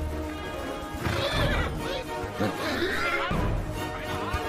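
Film score music with a horse neighing twice, about a second in and again near the end.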